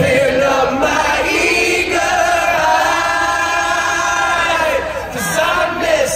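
A large crowd singing along in unison with a live rock band, the many voices holding one long note through the middle.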